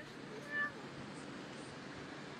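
A single short, high-pitched cry about half a second in, over a faint steady background hiss.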